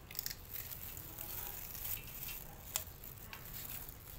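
Cats chewing crunchy fried snack sticks: irregular crisp crunches and clicks, the sharpest one just before three seconds in.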